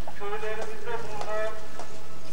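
An indistinct, high-pitched voice in short bending phrases, with a few light clicks.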